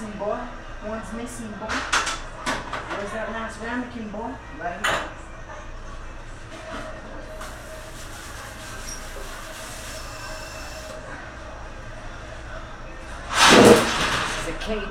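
A loud, short clatter of a wire cage rack being handled close to the microphone near the end, over a steady kitchen background hum. Before it there are a few seconds of indistinct voice.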